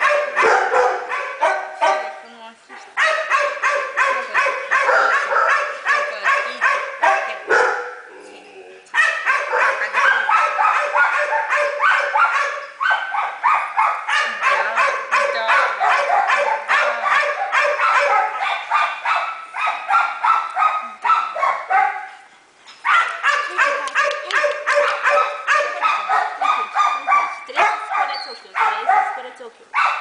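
Dogs barking rapidly and almost without a break, about four barks a second, with a few short pauses.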